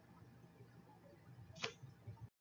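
Near silence: faint low room noise, with one brief click about a second and a half in.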